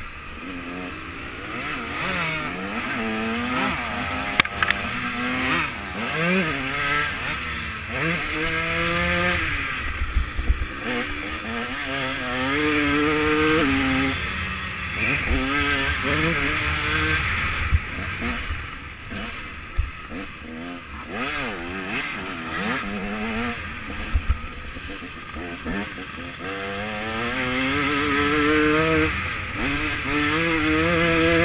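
KTM 150 SX two-stroke motocross engine heard from the rider's onboard camera, revving up and dropping back again and again as the throttle opens and closes and the gears change, with a few short knocks along the way.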